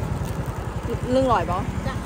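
A steady low engine rumble, like a vehicle engine running close by. A short spoken phrase comes through it about a second in.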